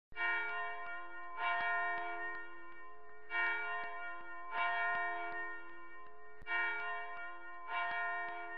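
A church bell struck six times in three pairs, the two strokes of each pair about a second apart, each stroke ringing on with a long, many-toned hum.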